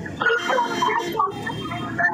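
Speech: two people talking on a phone call.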